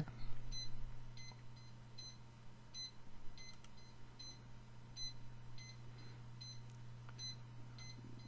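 Faint, short, high-pitched electronic beeps repeating about every two-thirds of a second, over a steady low electrical hum.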